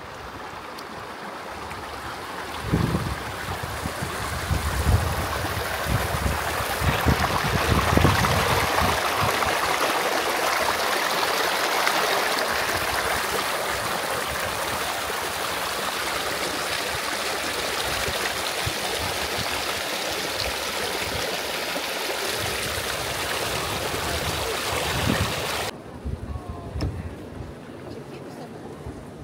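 Thermal spring water rushing down a narrow channel cut in the travertine: a steady stream noise that swells over the first few seconds and stops suddenly near the end.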